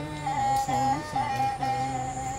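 Bodo serja, a bowed folk fiddle, played solo: a long high note held with slight wavers, over lower notes that slide and bend.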